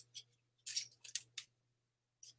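A perfume atomizer sprayed onto the skin and clothing in several short hissing puffs, about four in quick succession.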